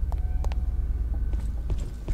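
Film sound-effects track: a deep steady rumble with a few sharp clicks and knocks scattered through it.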